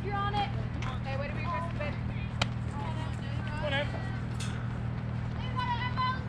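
Spectators and players shouting and calling out across a softball field, with a few sharp knocks and a steady low hum underneath.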